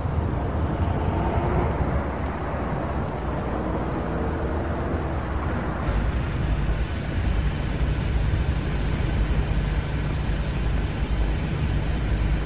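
A steady low mechanical rumble with a faint hum over it, growing a little stronger about halfway through.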